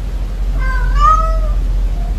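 A domestic cat meows once, about half a second in: a short note, then a longer one that falls away at the end, lasting about a second. A steady low hum sits underneath.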